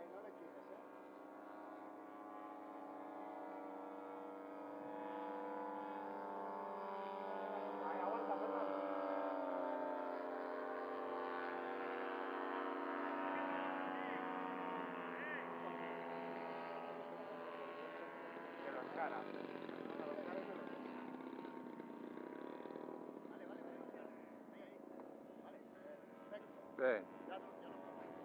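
Radio-controlled scale Fokker model's engine running in flight. Its note grows louder, slides down in pitch about eight to ten seconds in as the plane passes, then fades in the last seconds.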